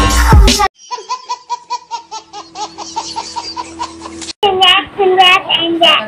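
Music cuts off under a second in, followed by about three seconds of rapid, high-pitched pulsing laughter, then talking.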